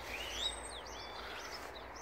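Birds chirping and whistling in the background, several short rising and falling calls mostly in the first second, over a steady low outdoor rumble.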